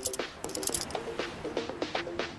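Background music: short repeated notes with a few crisp clicks, quieter than the dialogue around it.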